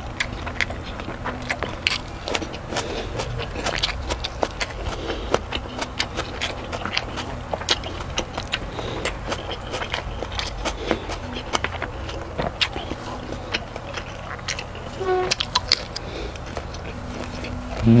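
Close-miked chewing of a person eating sausage and rice with the hands: many short wet smacks and clicks of the lips and mouth, packed closely together.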